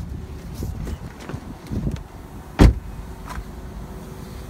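A Ford Focus driver's door is unlatched at the start, there are rustles and knocks as someone climbs out, then the door is shut with a single thud about two and a half seconds in. A low steady hum runs underneath.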